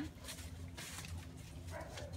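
A dog whimpers briefly near the end, over a low steady background hum.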